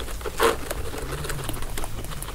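Guinea pigs chewing and pulling timothy hay: a run of crisp little crunches with a louder rustle of dry hay about half a second in. A brief low steady tone sounds near the middle.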